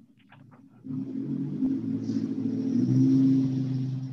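A low, steady rumbling hum that starts suddenly about a second in, grows louder toward three seconds, then begins to fade.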